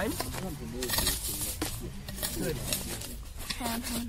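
Indistinct talking voices throughout, with a few short clicks or scrapes between them.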